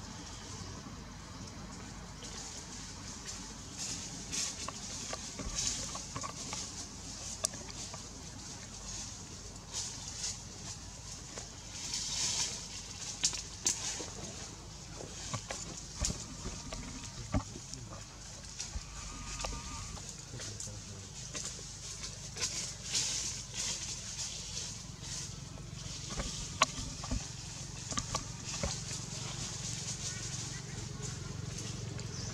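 Leaves rustling and twigs snapping in surges as macaques climb and shift among tree branches, with scattered sharp clicks and faint animal calls.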